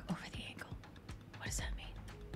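A voice finishes a word, then a soft breathy, whispered sound about one and a half seconds in, over faint background music.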